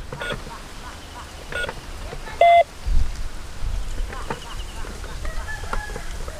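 Electronic keypad beeps from a toy robot coin bank as its number buttons are pressed: a few short single beeps, the loudest about two and a half seconds in, over low rumbling handling noise.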